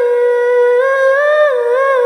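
A woman's voice humming a slow melody without instruments, one long held note that rises slightly and then wavers up and down near the end.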